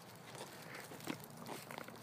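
Faint rustling and crackling of twigs, bark and dry leaves, with a few light ticks about half a second, a second and a second and a half in.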